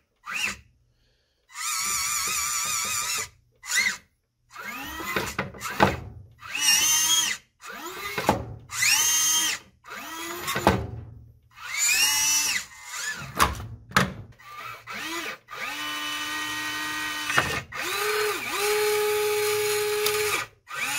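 A hobby servo whines through an aluminium spur-gear train in repeated short bursts, rising and falling in pitch each time, as it swings a claw to clamp and lift a steel 1-2-3 block. Near the end it gives two longer, steady whines.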